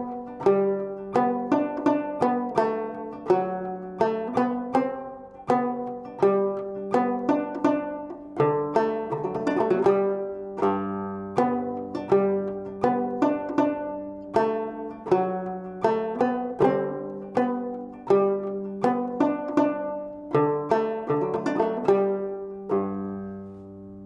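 Fretless five-string minstrel banjo with a skin head and gut strings, played in the down-picking stroke style: a steady run of struck notes in a syncopated, dotted rhythm. The playing eases off near the end, with the last notes left ringing.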